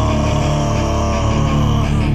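Live hardcore band playing loud, with distorted electric guitars and bass, and a held note sliding slowly down in pitch.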